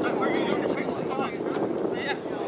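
Wind rumbling on the microphone, with scattered distant shouts and chatter from rugby players on the pitch.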